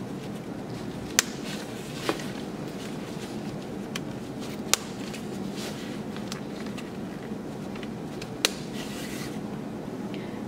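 Snap fasteners on a stroller seat pad flap being pressed shut, giving a few short, sharp clicks spread a few seconds apart, with faint handling of the fabric in between.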